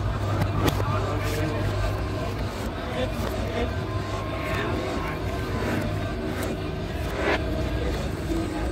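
Shop ambience: a steady low hum under indistinct voices, with a few sharp clicks or knocks, one near the start and one near the end.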